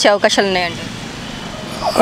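A man speaking, then a pause of about a second filled with steady street traffic noise before his voice comes back.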